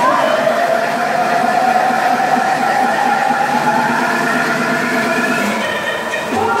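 The drive of a spinning fairground thrill ride, running at speed with a whine that slowly rises in pitch as it spins up.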